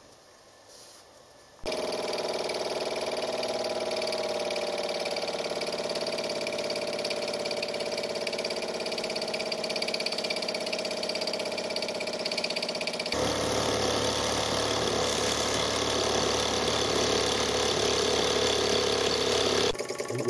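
A toy live-steam roller's spirit-fired steam engine running fast and steady, a rapid even chuffing clatter that starts suddenly after a quiet second or so. It gets louder and fuller about two-thirds of the way through.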